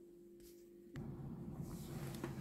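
Quiet room tone with a faint steady hum, then a click about a second in, after which the background noise becomes a little louder and lower.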